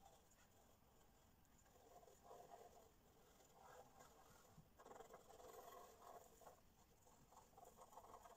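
Faint scratching of a pencil shading on paper, in several short spells of strokes with pauses between, the longest a little after halfway.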